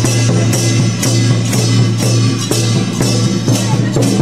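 Traditional temple procession percussion: a barrel drum and hand cymbals struck in a steady beat of about two strikes a second, over a steady low tone underneath.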